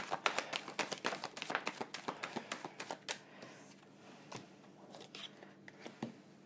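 A deck of tarot cards being shuffled by hand: a quick run of soft card clicks and slaps for about three seconds, then a few fainter taps as cards are set down.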